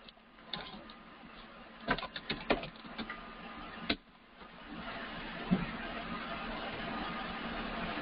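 Computer keyboard keys tapped in a few quick clicks, bunched together a couple of seconds in. From about halfway through, a steady hiss rises and holds.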